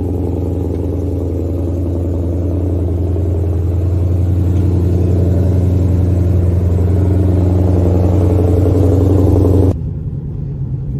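Ford Mustang Shelby GT500's supercharged 5.2-litre V8 idling steadily, shortly after a cold start, heard from outside the car and growing slightly louder. Near the end the sound cuts off suddenly to a quieter engine sound from inside the cabin.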